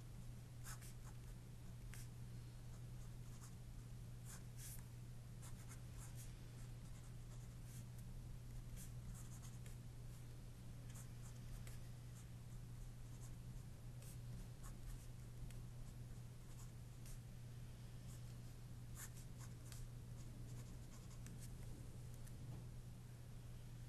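Pencil writing on paper: faint, intermittent scratching strokes and small taps as equations are written out, over a steady low electrical hum.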